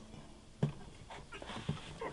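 Faint handling sounds of a car A/C line's spring-lock coupling being pushed onto a new accumulator, with one sharp click about two thirds of a second in and a few lighter ticks near the end as the coupling's spring locks into its groove.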